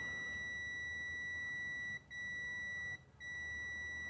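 Digital multimeter's continuity buzzer giving a steady high beep while its probes rest on a motor lead that reads about 0.3 ohm, a direct wire connection through no winding. The beep cuts out briefly about two seconds in and again just after three seconds.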